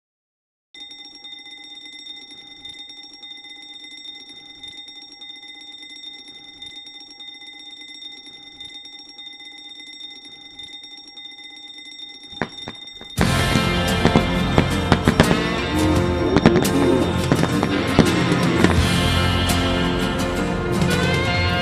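Mechanical bell alarm clock ringing steadily for about twelve seconds, then loud music starts suddenly.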